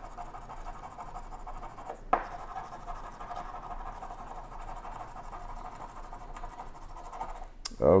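A coin scraping the coating off a Power 100X lottery scratch-off ticket: continuous rasping scratching, with one sharp tick about two seconds in.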